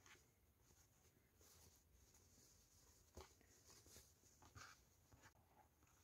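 Near silence: room tone, with two very faint short ticks about three and four and a half seconds in.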